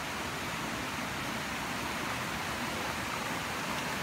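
Steady rushing of a small waterfall and rocky stream: an even, unbroken hiss of falling water.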